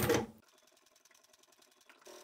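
ProSew sewing machine running as it stitches back over a strap end a few times, stopping about half a second in; near silence follows.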